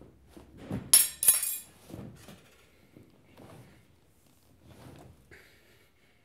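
Two sharp, glassy clinks about a second in, a third of a second apart, with a brief ringing after each, followed by softer knocks and rustling of movement.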